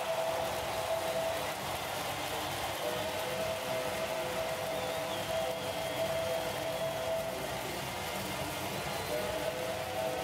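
Ice hockey arena crowd noise, a steady hubbub, with a sustained two-note chord held over it that drops out twice for a second or so.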